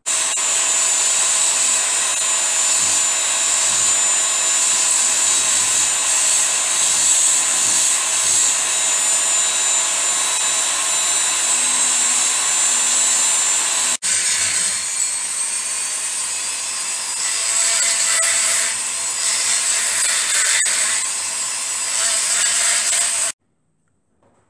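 Die grinder running at high speed with a steady high whine and a grinding hiss as it cuts into a BSA Bantam cylinder barrel, taking the lips out of the transfer and exhaust port edges. There is a brief break about two-thirds of the way in, the sound is more uneven after it, and it cuts off just before the end.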